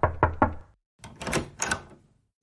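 Cartoon sound effect of a quick run of knuckle knocks on a front door, about five a second, stopping about half a second in. A door then opens about a second in.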